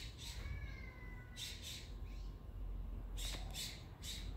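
A bird giving short harsh calls, mostly in pairs, a few times, with a faint thin whistle about half a second in, over a steady low rumble.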